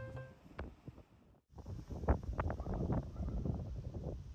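The tail of a jazz background track with double bass fades out, then about a second of silence. After that comes outdoor street ambience: a low rushing haze with scattered irregular clicks and knocks.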